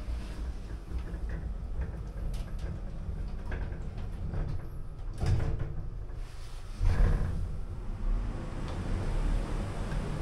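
Morris Vermaport lift's sliding doors closing, with a clunk about five seconds in and another near seven seconds, over a steady low hum as the car sets off downward.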